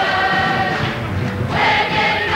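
A large group of young voices singing together in chorus, holding long notes.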